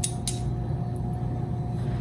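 Steady hum of an oven's fan running while the oven preheats, with two faint clicks near the start.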